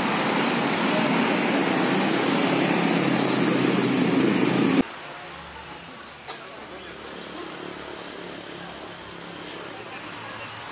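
Loud, steady rushing noise that cuts off abruptly about five seconds in. Quieter outdoor background sound follows, with a single sharp click a second or so later.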